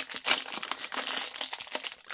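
Thin clear plastic bag crinkling as hands work it open, a run of irregular crackles.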